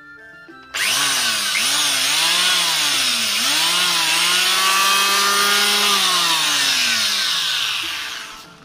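Stanley electric hand planer switched on about a second in and run free in the air, not cutting: a loud motor-and-cutter-drum whine whose pitch dips several times early on, holds steady, then falls away as it is switched off near the end.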